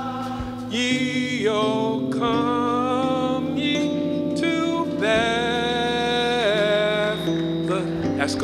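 A gospel song: a solo voice singing long held notes with vibrato over steady sustained keyboard chords.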